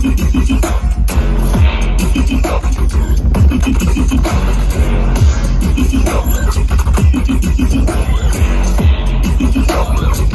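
Loud live wonky bass music (dubstep-style electronic music) played over a big festival sound system. It has a heavy, constant sub-bass and short sliding synth notes.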